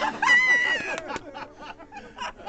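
A woman laughing loudly: it opens with a high, shrieking whoop, then breaks into quick cackling bursts that die down. Under the start, the acoustic guitar's last chord is ringing out.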